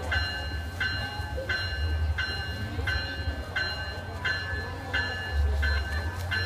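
Locomotive bell ringing steadily, about three strikes every two seconds, over the low rumble of the train rolling past.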